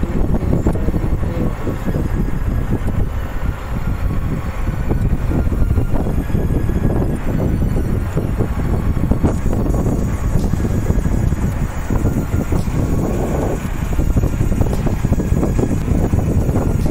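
Sandstorm wind buffeting the microphone: a loud low rumble that rises and falls in gusts.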